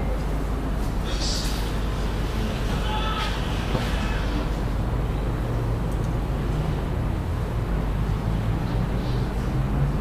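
Steady low hum and room noise, with a few faint, indistinct short sounds in the first few seconds.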